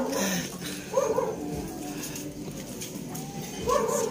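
A dog barking twice, once about a second in and once near the end.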